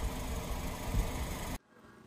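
Steady outdoor background rumble, heavy in the low end, that cuts off abruptly about a second and a half in, leaving near silence.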